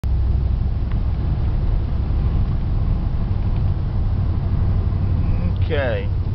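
Dodge Dakota pickup running on wood gas, heard from inside the cab while driving: a steady low rumble of engine and road. A brief voice comes in near the end.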